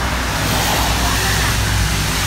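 Steady low rumble of road traffic under an even hiss.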